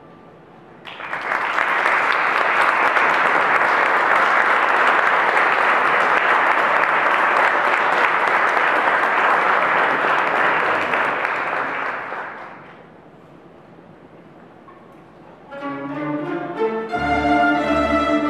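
Audience applauding steadily for about eleven seconds, dying away about twelve seconds in. A few seconds later a plectrum orchestra of bandurrias, lutes and guitars starts playing.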